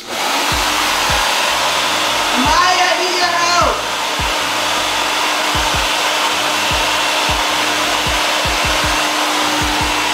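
Handheld electric hair dryer switched on and blowing steadily, a loud even rush of air over a steady motor hum, used to blow out curly hair before a trim.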